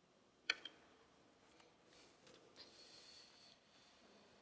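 Near silence in a quiet room, broken by a sharp click about half a second in and a softer second click just after.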